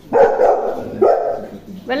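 A dog barking loudly: three barks about a second apart.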